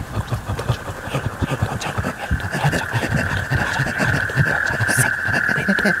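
Layered horror-film sound design: a steady high-pitched ringing tone swells up about two seconds in and holds, over a dense, rapid jumble of low murmuring and growling noises.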